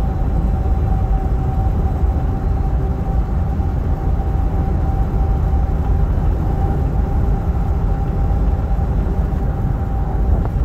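Steady road noise heard from inside a vehicle cruising on a highway over wet pavement: a constant low rumble of engine and tyres with a faint steady hum over it.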